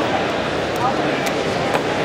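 Background chatter of a crowded exhibition hall, with a few light clicks about half a second apart as small metal regulator and filter parts are handled.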